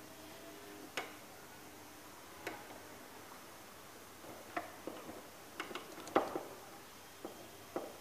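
Small metal parts of a spinning fishing reel's bail arm clicking and tapping as they are handled and fitted by hand: a dozen or so short, sharp ticks at uneven intervals, most of them in a quick cluster a little past the middle.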